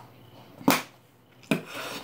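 Handling noises: two short scraping knocks, one a little before a second in and one about a second and a half in, the second trailing off in a brief rub.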